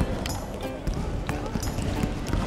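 A few sharp thuds of a ball on a wooden gym floor, the first about a second in, in a large echoing hall, with background voices and music.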